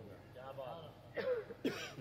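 A man clearing his throat and coughing into a microphone: two loud rasps about half a second apart in the second half.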